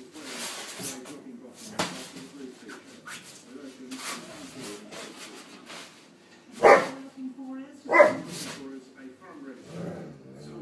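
Weimaraner barking: two loud barks a little over a second apart in the second half, amid quieter dog noises.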